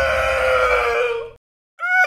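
A man's long, drawn-out yell, held on one pitch that sinks slowly, cutting off about one and a half seconds in.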